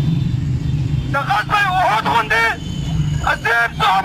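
A man's voice shouting slogans through a handheld megaphone, in two bursts: one starting about a second in and one near the end. A steady low rumble of street traffic runs beneath it.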